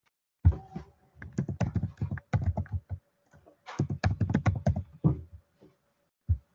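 Typing on a computer keyboard: two quick runs of keystrokes, a pause of under a second between them, as a short word is typed into each of two fields.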